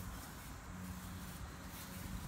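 Quiet background ambience with a faint steady low hum and no distinct events.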